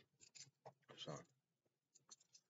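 Near silence: a few faint clicks, then a man saying a quiet "So" about a second in.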